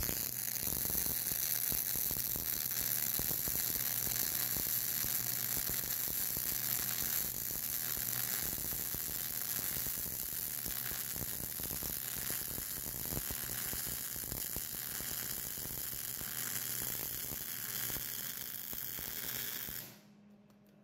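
MIG (GMAW) welding arc on steel, fed with 0.035 ER70S-6 wire, giving a steady crackling sizzle through one long continuous bead. It strikes at once at the start, eases slightly about seven seconds in, and cuts off suddenly at the end.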